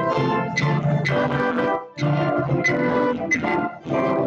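Church organ playing sustained chords in phrases, with short breaks about two seconds in and near the end.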